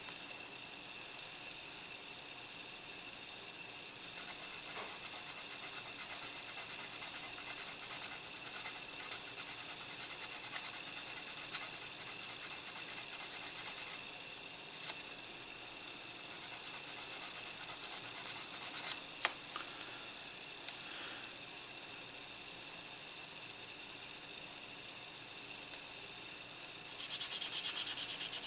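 Small sanding sponge cut from a nail sander rubbing along the seam of a plastic model kit part, smoothing the joint. Faint, scratchy sanding strokes come in two spells: from about four seconds in to fourteen, and again around sixteen to twenty seconds, with a few light clicks.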